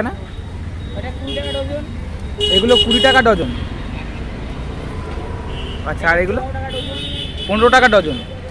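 Street traffic with a steady low rumble and several short vehicle horn toots, with people talking over it.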